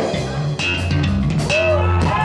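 Rock band playing live: drum kit hits over electric bass and electric guitar in an instrumental passage.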